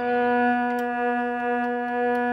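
A pipe organ sounding one held note in the middle register, steady and unwavering, with a few faint clicks over it.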